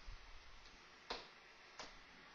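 Near silence: room tone with two faint, short ticks, one about a second in and one near the end.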